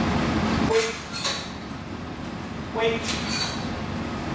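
Wire doors of plastic dog crates rattling and clicking, a brief metallic jingle about a second in and again near the end, each just after a spoken 'wait' command, over a steady hum; a low rumble fills the first moment.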